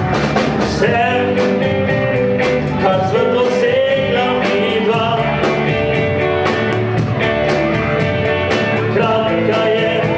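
Live band playing an upbeat Slovenian pop-folk song: keyboard, acoustic and electric guitars and drums, with a steady beat and sung vocal lines.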